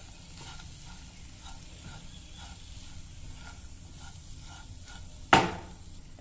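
Silicone spatula stirring spiced vegetables in a non-stick pan: soft scraping strokes about twice a second, then one sharp knock about five seconds in.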